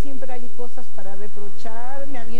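A woman's voice speaking, in quick phrases that rise and fall in pitch.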